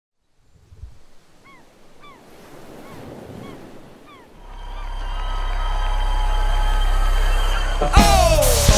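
Gulls crying over the wash of surf, about half a dozen short arched calls. From about four seconds in, a low sustained drone with held tones swells up and grows louder, ending in a sharp hit.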